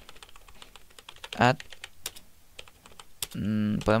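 Typing on a computer keyboard: a string of quick, light key clicks as text in a code editor is deleted and retyped.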